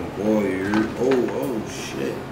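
A person's voice making wordless, wavering sounds in two short phrases, like humming or cooing.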